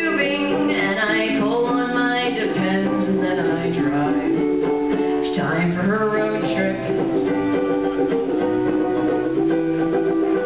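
Small ukulele playing a song, with a woman's voice singing over it for roughly the first six seconds, then the ukulele carrying on alone.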